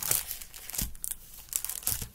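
Plastic packaging of craft supplies (a cellophane-packed ink pad set and bagged sticker sheets) crinkling and rustling in the hands, in a run of irregular crackles.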